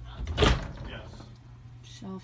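Wooden wardrobe cabinet door being pulled open, with one sharp clunk about half a second in.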